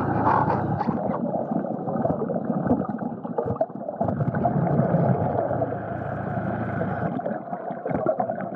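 Muffled, steady water noise with gurgling, dull and without any high end.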